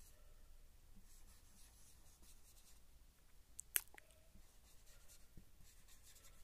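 Faint scratching of a felt-tip marker writing on a whiteboard, with one sharp tick a little before four seconds in.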